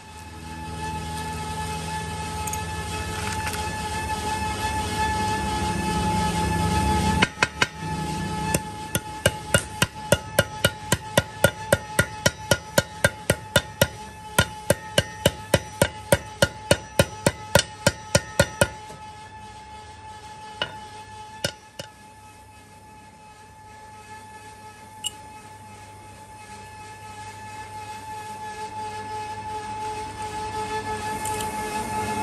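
Hammer striking steel in a fast, even run of blows, about three a second, for some eleven seconds, then a few single taps. A low rumble builds up before the blows begin.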